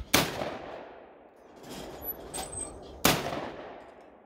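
Two shotgun shots about three seconds apart, each loud and sharp with a decaying echo after it.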